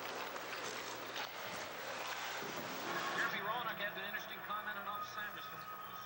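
Hockey skates scraping and carving on rink ice, with a few sharp clacks. About halfway through, the sound changes to a quieter room with a faint voice.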